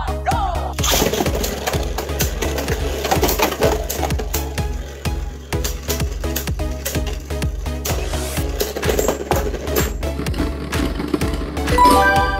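Beyblade Burst spinning tops clashing in a clear plastic stadium: many sharp clicks and knocks of the tops striking each other and the stadium wall, under background music. One top bursts apart, scattering its parts across the stadium floor.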